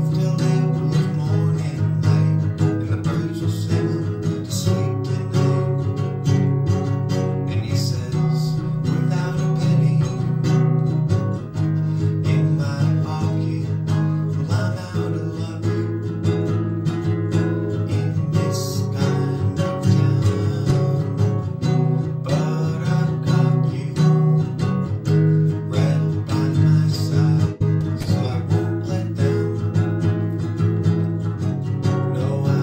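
Acoustic guitar with a capo, strummed steadily through a G, Em, C, D chord progression in a busy, even strumming pattern modelled on the original ukulele part.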